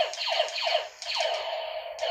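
Toy laser shooters firing electronic 'pew' zap sound effects: a quick run of falling-pitch zaps, then, about halfway through, a longer, wavering electronic tone.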